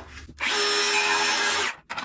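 Circular saw cutting through a 2x4 at a 15-degree bevel: a loud, steady whine starting about half a second in, lasting about a second and a half and stopping abruptly as the cut finishes.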